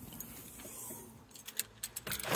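Quiet handling noise, then a few light clicks and a jingle of keys near the end as a car's boot lid is opened.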